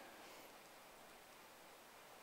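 Near silence: the room tone of a large hall during a pause in a talk.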